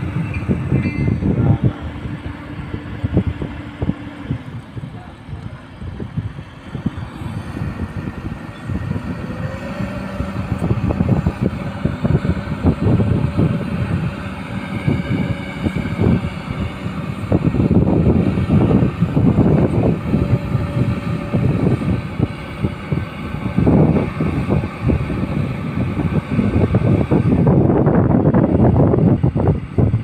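Heavy hydraulic excavator engines running steadily during a lift, with a low hum whose pitch shifts about nine seconds in. Gusts of wind buffet the microphone, heaviest in the second half and near the end.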